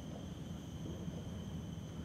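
Faint steady outdoor background: a constant high-pitched insect drone over a low rumble.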